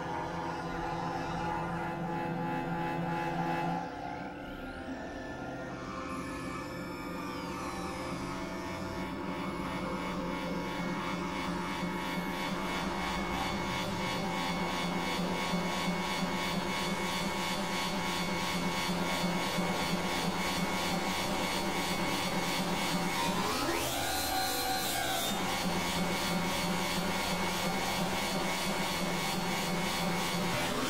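Experimental electronic drone music: layered synthesizer tones held steady under a dense noisy texture. The level dips about four seconds in, and a short swooping pitch sweep passes through about twenty-four seconds in.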